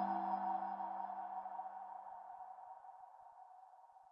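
Logo sting: the ringing tail of a struck, bell-like tone. It fades steadily away and cuts off at the end.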